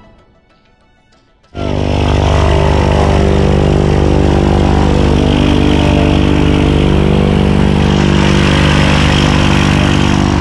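Aircraft propeller engine running steadily on the ground. It starts abruptly about one and a half seconds in, as a loud, even drone with no beat.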